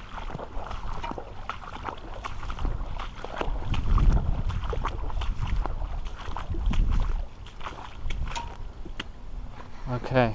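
Wellington boots splashing step by step through a few inches of floodwater on a footpath, in irregular sloshes. There are louder low rumbles about four seconds in and again near seven seconds.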